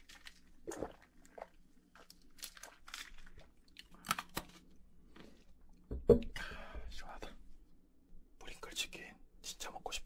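Close-miked sips and swallows of iced cola drunk through a straw, in short separate sounds. About six seconds in there is a sharp knock, the loudest sound, as the glass is set down on the table.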